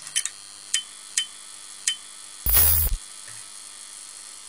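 Intro title sound effects over a steady hiss: a few sharp clicks, like keys typing, in the first two seconds, then one loud half-second whoosh-and-hit with a deep low end about halfway through.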